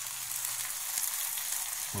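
Seasoned beef roast searing in hot oil in an enamelled cast-iron skillet: a steady sizzle as it browns.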